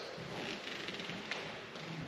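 Faint, distant voices murmuring under low room noise, with no clear sound event.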